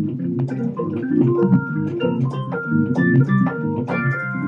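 Digital keyboard played with an organ voice: a fast progressive-rock improvisation, with busy low chords under a higher line of quick single notes.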